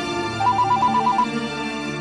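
Mobile phone ringing: a ringtone of a fast trill flipping between two high tones, lasting under a second, over background music.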